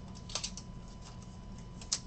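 Trading cards and a clear plastic sleeve being handled, giving small sharp clicks: a few together about half a second in and one louder click near the end.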